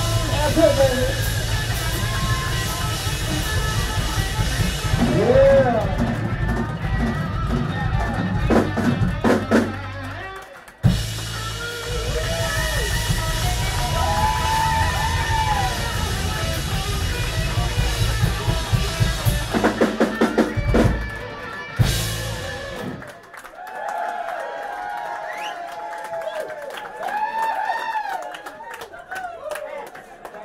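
Live rock band with electric guitars, bass and drum kit playing loudly; the band stops dead for a moment about ten seconds in, comes back in, and ends the song with a run of hard accented hits a little after twenty seconds. The crowd then cheers and whoops.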